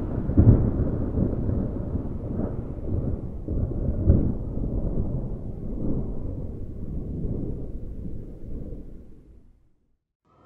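Thunder rolling in a low, uneven rumble under an approaching arcus storm cloud, swelling and easing several times before fading out near the end.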